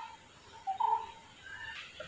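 Faint bird calls: a few short, clear notes in the first half, with a higher note near the end.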